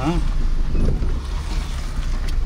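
Car driving, heard from inside the cabin: a steady low engine and road rumble with wind noise through the open side window.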